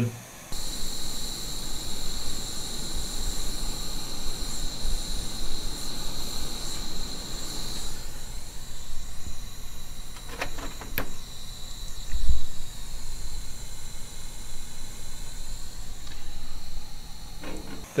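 Handheld propane torch burning steadily, with a thin high tone over the flame noise for the first half. A couple of light clicks come about ten seconds in.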